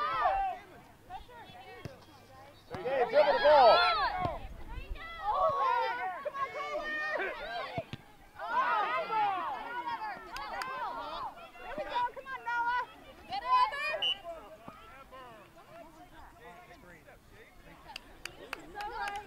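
Voices calling and shouting across a soccer field, in several loud bursts with short pauses between.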